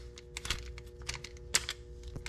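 Plusinno HA3000 spinning reel, spool removed, being cranked by hand against stiff resistance: its gears and handle give irregular sharp clicks and ticks as it is forced round. The reel has seized up and is very hard to turn, which the owner thinks needs lubrication.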